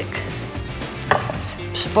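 Kitchenware handled on a wooden chopping board: a glass bowl and plate are moved about, giving a couple of light knocks and a short clatter near the end.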